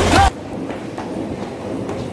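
Background music with a beat cuts off abruptly a fraction of a second in. What follows is a steady, low rumbling noise with a few faint clicks, the sound of a phone's microphone being carried while walking.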